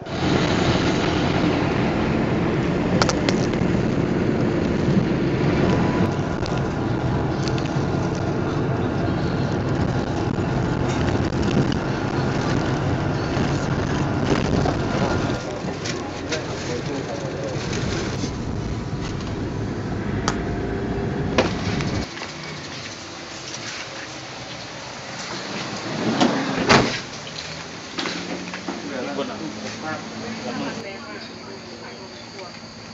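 Steady engine and road rumble inside a bus cabin, with voices in the background. The rumble drops a step about halfway through, and the last third is quieter, broken by a few knocks and a short louder swell.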